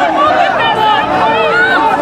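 A dense crowd of protesters, many voices shouting and talking over one another at close range, with no single voice standing out.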